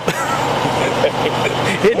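Brief laughter, then a voice starting to speak, over the steady low drone of a running vehicle engine.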